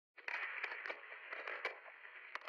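Thin, crackly static hiss with scattered clicks and pops.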